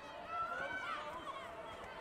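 Several voices calling and shouting at once over the general murmur of a large sports hall, loudest from about half a second to a second in.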